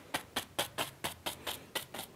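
A fan brush slammed repeatedly against a wet oil-painted canvas: a quick run of dry taps, about five a second.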